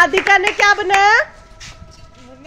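A child's high-pitched voice, calling out or talking with a gliding pitch for about the first second, then dropping to quieter background voices.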